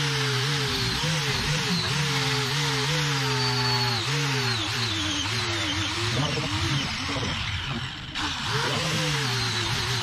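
Angle grinder with a flap disc sanding a leaf-spring steel blade, a steady grinding hiss that briefly drops away just before eight seconds in.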